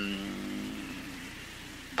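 A man's voice holding one drawn-out, slightly falling hesitation sound for about a second, then fading. After it come only steady background hiss and a low electrical hum.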